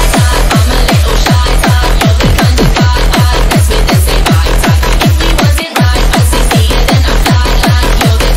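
Electronic dance music with a pounding kick drum at about four beats a second, each kick dropping in pitch, and a brief break in the beat about three-quarters of the way through.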